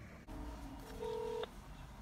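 Electronic tones of a smartphone placing a call: a short steady beep of about half a second comes about a second in, over the low rumble of a car cabin.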